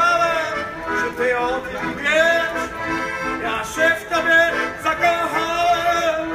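Accordion playing a melody over held chords.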